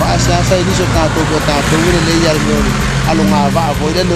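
A man talking, over a steady low rumble in the background.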